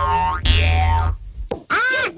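Cartoon soundtrack with music and a boing effect for the coiled clock mainspring. In the second half, pitched sounds wobble sharply up and down.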